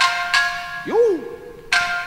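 Orchestral introduction to an enka song: struck, bell-like chime tones ring out one after another and fade, with a short sliding tone that rises and falls about halfway through.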